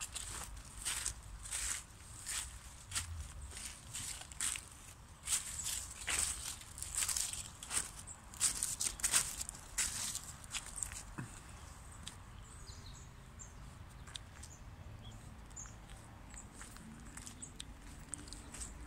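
Footsteps of a person walking over grass, soil and scattered twigs, about two steps a second. The steps stop after about eleven seconds, leaving only quiet outdoor background.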